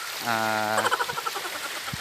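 A man's voice holding a hesitant "uhh" at one steady pitch for about half a second, trailing off into a faint murmur, over a steady hiss of wind or surf.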